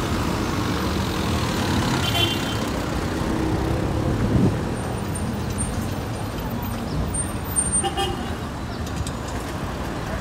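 Road traffic on a town street: motor vehicles running past in a steady rumble, with a brief horn toot about two seconds in.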